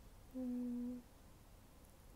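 A single short, steady tone of one unchanging pitch, lasting about two-thirds of a second, starting and stopping abruptly about a third of a second in.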